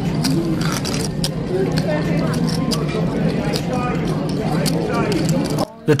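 Poker room ambience: overlapping background chatter and repeated small clicks of poker chips being handled, over a steady low hum. It cuts off suddenly near the end.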